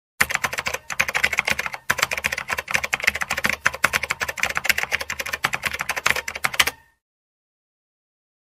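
Typing sound effect: a fast, continuous run of keystroke clicks that accompanies text being typed out on screen. It pauses briefly about two seconds in and stops abruptly about seven seconds in, when the text is complete.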